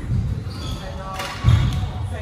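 Squash rally: the ball is struck and hits the court walls and floor as dull thuds, the loudest about one and a half seconds in.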